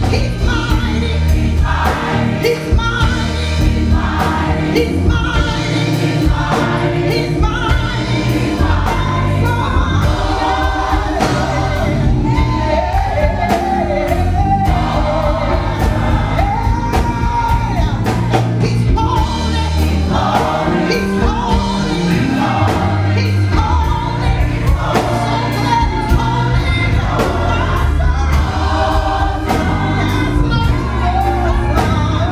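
Gospel choir singing with a female lead soloist on a microphone, over a steady beat and heavy bass accompaniment.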